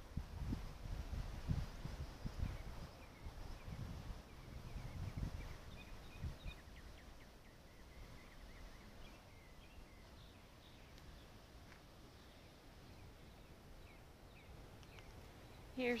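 Wind gusting on the microphone for the first six seconds or so, with faint bird chirps through the middle. After that, quiet outdoor ambience.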